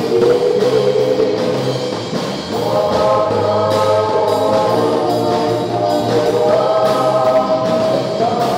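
A small group of singers singing a Tagalog gospel song together into microphones, backed by a live band of electric guitars and a drum kit, with a short lull in the singing about two seconds in.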